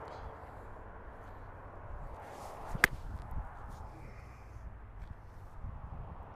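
A golf club swishing through a full swing and striking a ball off an artificial-turf hitting mat: a short rising whoosh, then a single sharp crack of impact just under three seconds in.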